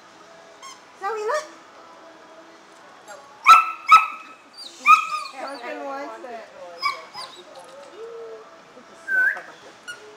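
A puppy barking: three short, high-pitched barks about half a second to a second apart in the middle, the loudest sounds here, among quieter voices.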